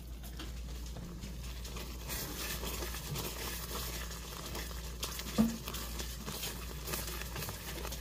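Wooden spoon stirring a thick Alfredo sauce of melting butter in a skillet: faint, soft wet scraping and bubbling, with one light knock about five seconds in.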